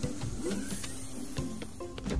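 Soft background music with a cartoon sound effect of a train's sliding doors opening, a mechanical whirr with a high hiss.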